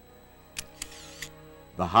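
Three sharp camera-shutter clicks over a faint held music chord, then a man's narration begins at the very end.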